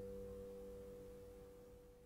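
The last chord of a piece on a nylon-string classical guitar ringing out and slowly fading away, a few sustained notes with no new plucks, now faint.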